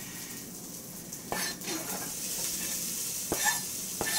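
Browned sausage sizzling steadily in a hot slow-cooker pot as chopped onion is scraped off a cutting board into it, with a few knocks of the spatula and board against the pot, the first about a second in and another near the end.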